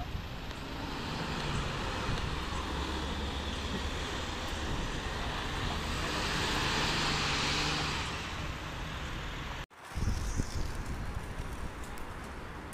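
Mercedes-Benz Citaro city buses driving by in street traffic: a low engine hum with tyre and road noise that swells as a bus passes about six to eight seconds in. The sound cuts off abruptly near the end and gives way to different traffic noise.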